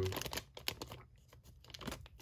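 Thin clear plastic bag crinkling in short irregular crackles as a toy airliner sealed inside it is handled, busiest in the first half-second and again near the end.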